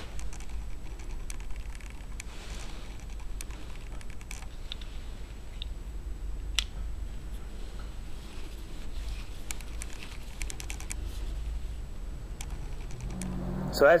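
Hand-turned flash hole uniforming tool cutting and scraping inside a brass rifle case: scattered light clicks and scrapes over a low rumble, with one sharper click about six and a half seconds in.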